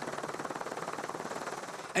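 Helicopter in flight, its rotor giving a rapid, even chopping beat.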